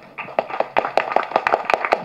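Audience applauding with scattered, irregular claps as a speech ends.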